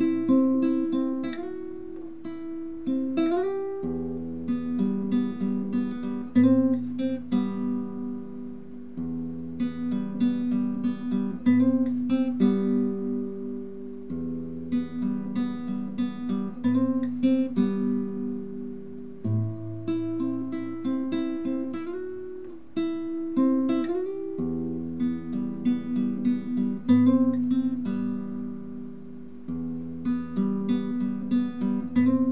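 Solo classical guitar fingerpicking a repeating arpeggiated pattern over low open bass notes, with a few notes slid up the neck. The phrase and its bass note change about every five seconds.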